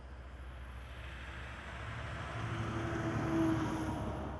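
A vehicle passing: a low rumble and rising hiss that grow louder to a peak about three seconds in, then begin to fade. A faint high insect trill runs through it.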